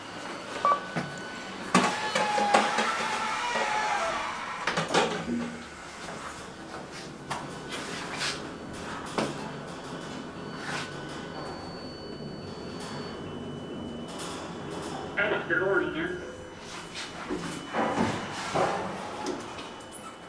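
Indistinct voices echoing in a large hall, mixed with the sounds of a KONE glass elevator ride: scattered clicks from the buttons and doors, and a faint steady high whine while the car travels in the second half.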